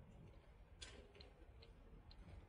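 Near silence over a faint low rumble, with a few faint sharp ticks: the loudest a little under a second in, then three smaller ones at uneven intervals.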